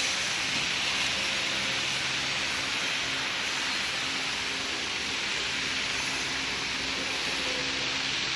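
Toilet-roll packaging machine running: a steady hiss with a faint low hum underneath, even throughout.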